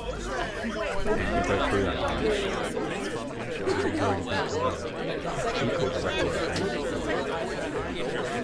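Many people's voices talking and exclaiming over one another at once: several reaction recordings layered together into one babble.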